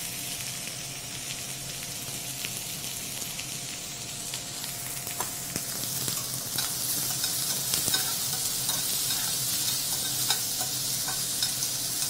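Oyster mushrooms frying gently in canola oil in a stainless steel pan over low heat: a steady sizzle that grows louder about five seconds in, with a few light clicks.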